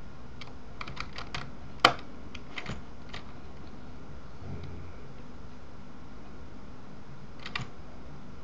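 Scattered keystrokes and clicks on a computer keyboard: a quick run of taps about a second in, one loud sharp click just before two seconds, a few more taps, then a quick pair near the end, over a faint steady hum.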